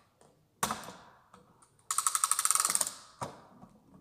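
Air rifle's breech mechanism being opened for loading: a sharp metallic click, then a rapid ratcheting run of clicks lasting about a second, then one more click.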